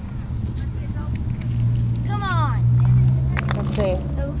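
A vehicle's low engine rumble that swells in the middle, under a child's high shout, with a few sharp clicks near the end.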